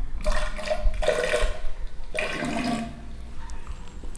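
Water being poured from a plastic jug into a tall plastic measuring jug, splashing in several pours over the first three seconds, topping the jug up to a measured 100 ml.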